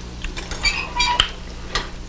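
Metal pans and utensils clinking on a stovetop: a few sharp clinks with brief metallic ringing around the middle, over a low steady hum.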